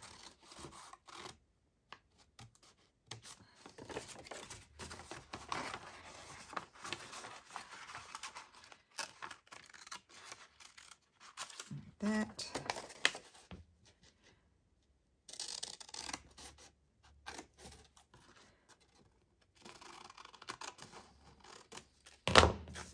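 Scissors snipping through a sheet of paper in short, irregular cuts, with the paper rustling as it is turned between cuts.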